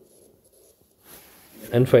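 Faint scratching of a stylus writing on a tablet as digits are written by hand. Near the end a man's voice starts speaking.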